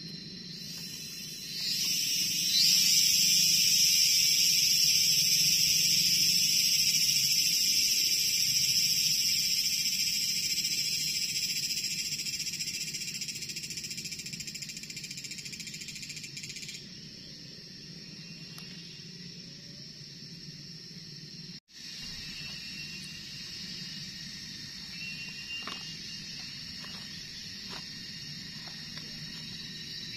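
Loud, high-pitched buzzing of a cicada starting about a second and a half in with a quick upward sweep, holding steady, then slowly fading and cutting off abruptly about halfway through. A softer high insect drone carries on after it, with a few light clinks near the end.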